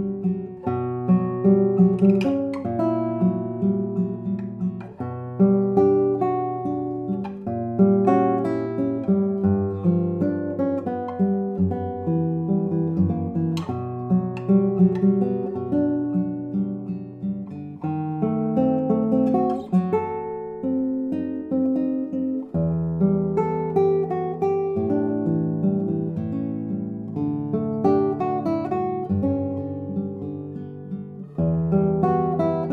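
Solo classical guitar: a 2021 Rinaldo Vacca No. 285 nylon-string concert guitar, lattice-braced with double sides and a Madagascar rosewood back, played fingerstyle in a continuous piece of plucked notes and chords that ring on.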